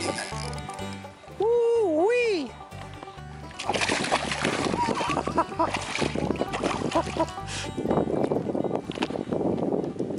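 A hooked bass thrashing and splashing at the water's surface as it is played in close to the float tube, the splashing starting about three and a half seconds in and going on in short bursts, over background music with a steady beat.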